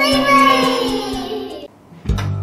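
Children's channel intro jingle: a child's voice sings one long falling note over music, cutting off shortly before the end.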